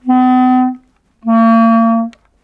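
Wooden basset clarinet playing two held low notes, each about three-quarters of a second long with a short gap between, the second a little lower than the first. These are notes that need the extra keys added to the instrument, and that are very bad without them.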